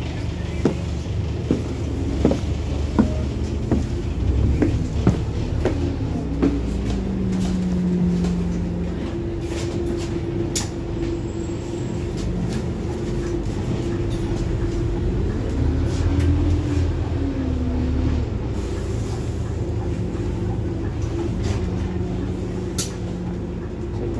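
Inside a Scania N230UD double-decker bus on the move: a steady engine and drivetrain hum with a whine that shifts in pitch as the bus changes speed. Footsteps and knocks on the stairs sound in the first few seconds.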